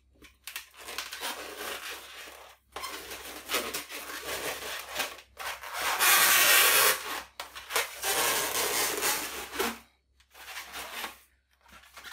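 Latex modelling balloons rubbing against each other as a red and a white balloon are twisted together, in spells with short pauses. The loudest stretch comes about six seconds in and lasts about a second.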